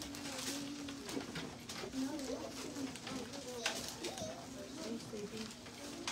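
Faint, low voices murmuring in a small room, too soft to make out words.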